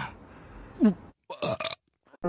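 A person burping after a meal: one loud, short burp falling in pitch a little under a second in, then a brief choppy burp.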